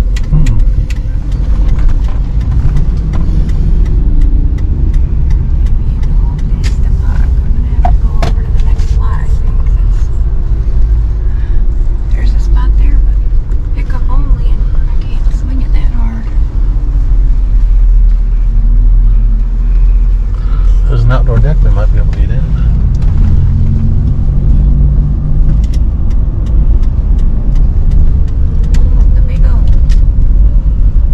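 Car interior noise from a slowly driven car: a steady, heavy low rumble of engine and road, with faint voices talking at times.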